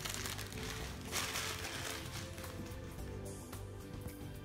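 Background music over a crinkling, rustling noise from a Siberian husky chewing and tugging at a plush toy, loudest from about a second in to halfway through.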